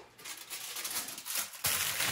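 Aluminium foil crinkling and rustling as a sheet is handled and pressed down over an upside-down metal baking pan, louder toward the end.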